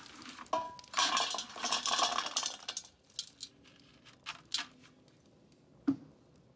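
Halloween candy poured out of a pumpkin pail onto a metal platter: a dense clatter of wrapped sweets and lollipops for about two seconds, then a few single pieces clinking down, with one last sharp click near the end.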